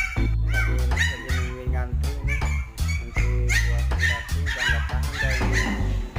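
Background music: a song with a heavy, pulsing bass beat and a singing voice.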